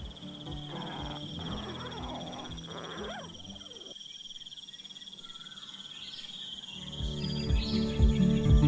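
Night insects trilling steadily at one high pitch, with croaking calls in the first three seconds, over soft background music that swells with a beat near the end.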